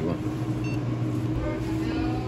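Restaurant room tone: a steady low hum with murmured voices, and a brief high electronic beep less than a second in.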